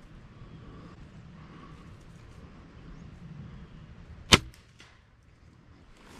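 Crossbow firing: one sharp, loud snap of the string and limbs about four seconds in, followed by a few faint clicks.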